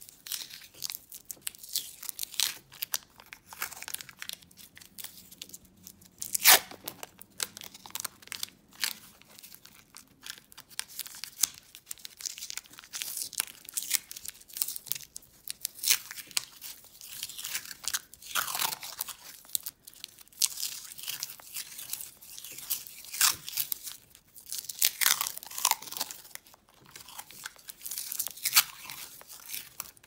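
Yellow masking tape being pulled off its roll and wrapped tightly around the end of a wire, heard as repeated peeling, crinkling and small clicks of the tape; one sharp click about six seconds in is the loudest.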